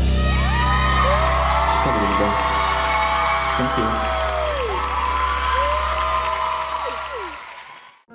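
The last sustained chord of a live pop ballad, with a concert audience cheering and whooping over it in long rising and falling calls. The sound fades out about a second before the end.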